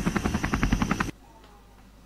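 A rapid burst of sharp bangs, about a dozen a second like machine-gun fire, that cuts off suddenly about a second in.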